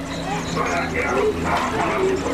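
Wordless vocal sounds, yelps or whimpers, over a steady low hum.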